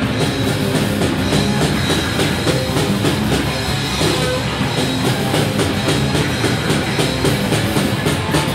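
Live rock band playing loud and steady: electric guitar, bass guitar and drum kit together, with drum hits coming thicker near the end.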